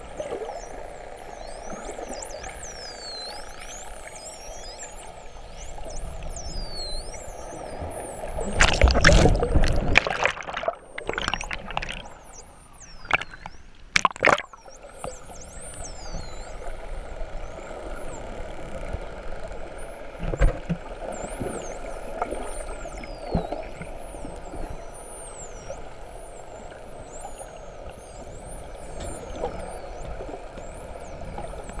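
Bottlenose dolphins whistling underwater: many high-pitched, overlapping whistles that rise and fall, heard through a steady underwater background noise. A loud rush of noise comes about nine seconds in, and a few sharp knocks come around thirteen to fourteen seconds.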